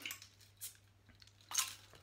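Crown cap being prised off a glass beer bottle: faint metal clicks as the opener catches, then the cap comes off with a short sharp pop about one and a half seconds in.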